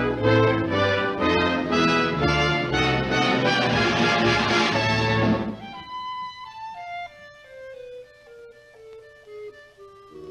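Orchestral cartoon score: a loud full-orchestra passage that drops away about five and a half seconds in, leaving a quiet line of single notes stepping down in pitch.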